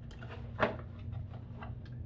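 Hands handling small accessory boxes and a strap: a string of light clicks and taps, the loudest about half a second in, over a low steady hum.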